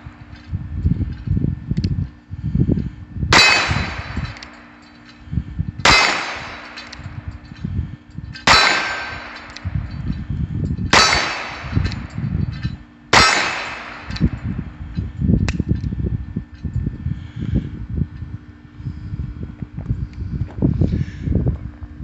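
Ruger Wrangler .22 LR single-action revolver fired five times, about two and a half seconds apart as the hammer is cocked for each shot. Each sharp crack is followed by a metallic ringing tail. The shots stop about thirteen seconds in.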